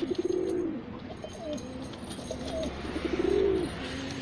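Domestic pigeons cooing: a long rolling coo at the start, shorter coos in between, and another long coo about three seconds in.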